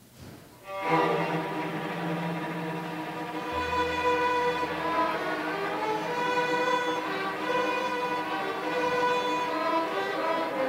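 A student string ensemble of violins, cellos and double bass starts playing about a second in, with sustained bowed notes.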